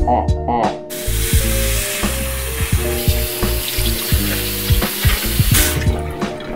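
Bathroom tap running into the sink: a steady hiss that starts abruptly about a second in and stops near the end. Background music plays under it.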